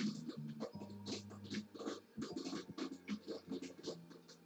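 Irregular scratching and rustling strokes over a low, steady hum.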